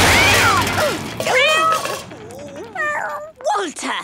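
Cartoon crash-and-splash of falling paint tins dying away in the first second, followed by a cartoon cat yowling and meowing in several short calls that bend up and down in pitch.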